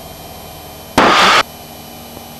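Cockpit intercom with a low steady drone in the background. About a second in, a short breathy burst into a headset microphone cuts in and out sharply for about half a second, as the voice-activated intercom opens and closes.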